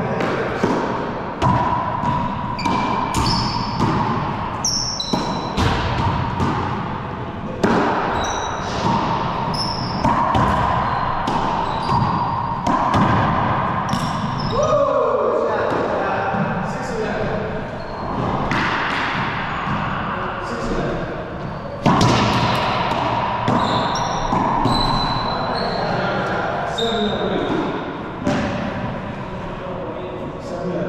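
Racquetball play in an enclosed court: repeated sharp, echoing hits of the ball off racquets and walls, with short high squeaks of sneakers on the hardwood floor between them.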